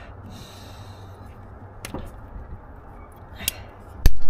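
Rubber spark plug boots on HT leads being handled and pushed down onto the plugs. There are two small clicks, about two seconds in and near the end, with faint rubbing between them, over a low steady rumble.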